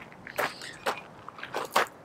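Footsteps on gravel: about four separate steps, the last two close together near the end.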